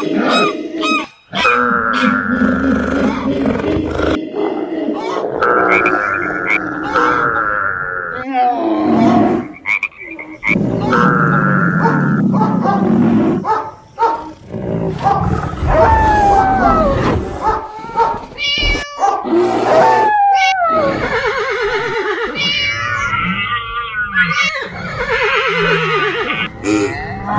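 Assorted animal calls and roars following one another: held high calls repeated in short spells, then calls that glide up and down in pitch, thickening into a dense cluster near the end.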